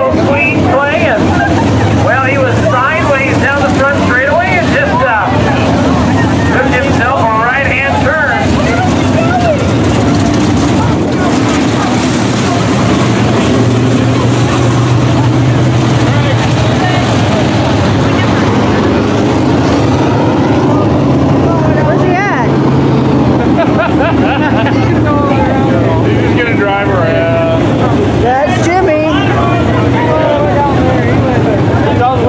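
Modified race cars' engines running steadily as the field laps the track. People's voices talk over the engines in the first several seconds and again near the end.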